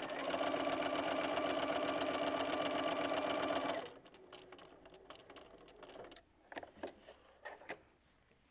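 Bernina sewing machine stitching steadily at speed, running a scant eighth-inch basting seam down a folded fabric strip. The stitching stops suddenly about four seconds in, followed by a few faint clicks and rustles.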